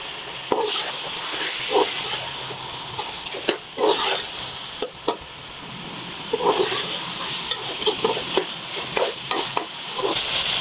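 Raw chicken pieces sizzling steadily in a hot tomato masala in a metal pan, while a slotted steel spoon stirs them with repeated scrapes and knocks against the pan.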